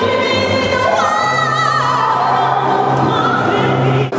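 A woman singing into a microphone, accompanied on acoustic guitar, holding long notes with vibrato; about a second in her melody moves high, then falls to a lower held note.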